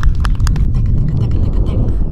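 Wind buffeting an outdoor microphone, a heavy steady rumble. Sharp rhythmic clicks about four a second sound over it and stop under a second in.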